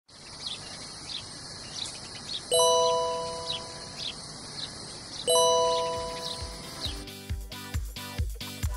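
Birds chirping in short repeated calls over a steady hiss, with two ringing chime strikes a few seconds apart, each fading slowly. Near the end a low, pulsing music beat comes in.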